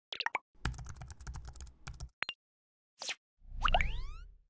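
Sound effects of an animated logo sting: a quick run of clicks and pops over a low hum, a short whoosh about three seconds in, then a rising sweep with a low rumble as the logo appears.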